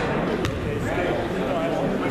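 Indistinct chatter of voices in a gymnasium, echoing in the hall, with one sharp knock about half a second in.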